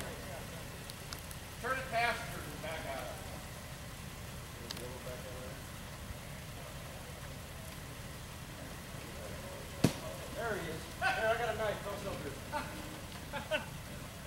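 Jeep Wrangler engine idling low and steady while the vehicle sits stopped on a rock ledge, under short bursts of men's voices, with one sharp click near the middle.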